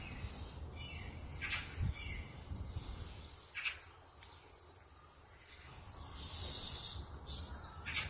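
Bird calls: about four short calls, spaced a couple of seconds apart, over a steady low hum.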